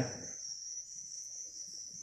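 A steady, high-pitched insect trill, unchanging, with faint low rustling beneath it.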